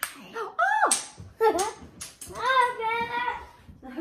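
A young boy's high-pitched wordless cries and squeals, rising and falling in pitch, with one longer wavering call after the middle and a few sharp clicks among them.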